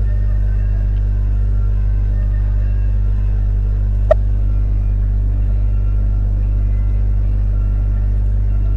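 Steady low electrical hum on the recording, with one short click about four seconds in.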